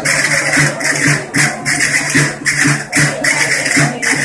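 Traditional Asturian folk-dance music carried by a fast, even shaking-and-jingling percussion beat of about four strokes a second.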